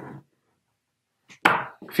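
Mostly near silence, broken about one and a half seconds in by a short, sharp knock.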